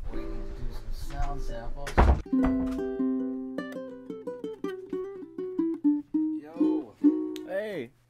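Ukulele being played: a sharp strum about two seconds in, then a run of single plucked notes, each ringing briefly into the next.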